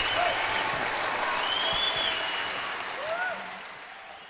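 Large concert audience applauding and cheering, with a few sliding calls from the crowd. The applause fades out near the end.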